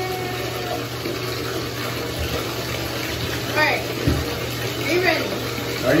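Bathtub tap running steadily into the tub, a constant rush of water as the bath fills.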